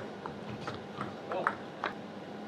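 Table tennis rally: a plastic ball is struck by rubber-faced bats and bounces on the table, giving a quick, uneven series of sharp clicks. The loudest hit comes about one and a half seconds in.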